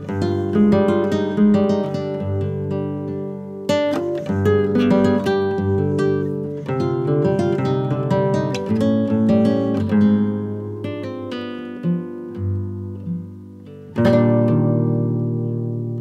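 Background music of plucked and strummed acoustic guitar, a run of picked notes that dips briefly in level near the end before picking up again.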